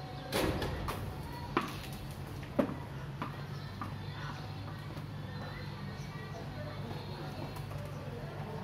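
A short clatter, then two sharp knocks on a hard surface about a second apart, the second the loudest, over a steady low hum.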